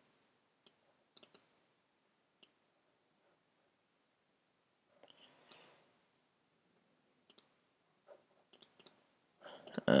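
Faint computer mouse clicks, scattered single clicks and quick pairs, about a dozen in all, with a man's voice starting right at the end.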